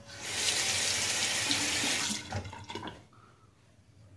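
Bathroom sink tap running into the basin for about two seconds, then stopping, during a wet shave.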